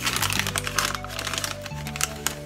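Foil inner bag of a boxed baby cereal crinkling and crackling as it is pulled open by hand, a dense run of crackles, over background music.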